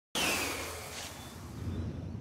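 Cartoon swish effect for a falling leaf: a soft whoosh with a high whistle gliding downward, loudest at the start and fading to a faint hiss as the leaf settles.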